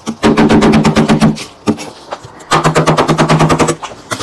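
Plastic scraper scraping thick frost off the wall of a chest freezer, rattling in two quick bursts of rapid strokes, about ten a second.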